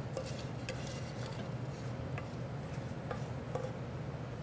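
A few faint, light clinks of kitchen utensils and pans over a steady low hum.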